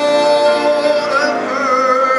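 Congregation singing a hymn, voices holding long notes that waver slightly in pitch in the second half.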